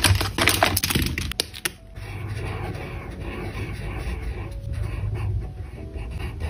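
Clicks and clatter of pens being handled in a clear plastic pencil case. About two seconds in, this gives way to a felt-tip marker rubbing steadily across notebook paper in slow strokes.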